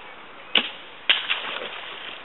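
A bow shot: two sharp cracks about half a second apart, the second followed by brief rustling.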